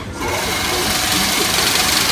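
Single-wire chain link fence weaving machine running steadily, a continuous mechanical sound.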